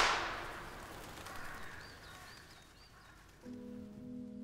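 The echo of a single gunshot, the shot that slaughters a goat, dying away over about a second and a half, with a few faint high chirps. Soft held chords of music begin about three and a half seconds in.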